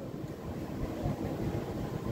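Steady, even background noise of the room during a pause in speech, with no distinct event standing out.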